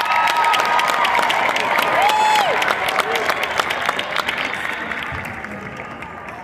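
Stadium crowd applauding and cheering, with whoops and shouts over the clapping, fading toward the end.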